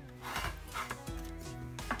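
Pencil scraping across watercolour paper in two short strokes as a line is drawn along the edge of a paint-set lid, over soft background music with held notes.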